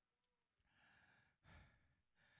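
Near silence, with a faint breath drawn into a handheld microphone about halfway through.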